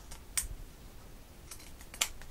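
Fabric scissors clicking and snipping as the blades close through the folded belt-loop strip: a few sharp clicks, the clearest about a third of a second in and a small cluster near the end.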